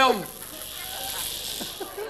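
A man's voice trailing off, falling in pitch, in the first moment. Then a steady high hiss with faint voices under it.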